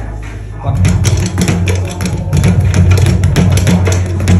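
Boxing speed bag punched against its overhead rebound platform: a rapid, uneven run of rattling hits beginning about a second in. The hitter is not yet at ease with the bag and finds it hard to keep the rhythm.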